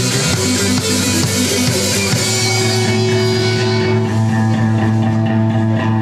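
A live rock band with electric guitars, bass and drums playing loudly. About two and a half seconds in, the busy playing gives way to a long held final chord that rings on and then cuts off near the end.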